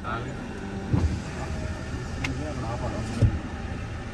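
A steady low rumble of engine and road noise inside a Honda car's cabin as it is driven, with a low thump about a second in and another about three seconds in.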